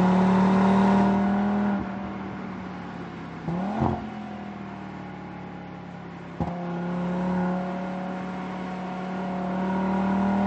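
Audi RS3 Sportback's turbocharged 2.5-litre five-cylinder engine driving under load, easing off after about two seconds, giving a short rev around four seconds in, then pulling again with a slowly rising pitch toward the end.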